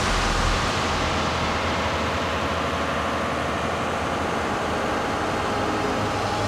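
Large multi-cylinder diesel engine of a generating set running with a steady, even noise.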